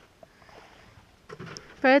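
Near-silent calm outdoor ambience with a few faint small sounds, then a person starts speaking near the end.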